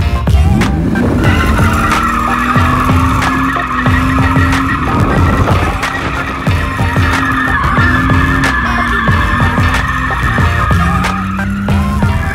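BMW E46 drifting, heard from inside the cabin: the engine is held at high revs with repeated brief dips, under a long steady tyre squeal that starts about a second in and runs nearly to the end.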